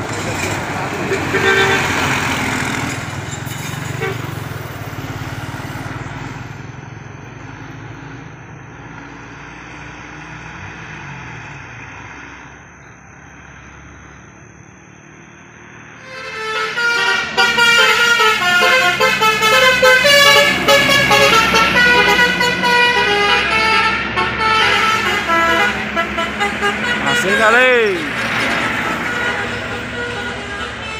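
A coach bus drives past with its engine running, fading away. Then comes a loud, busy run of quickly changing pitched notes from vehicle horns, with a swooping rise and fall near the end.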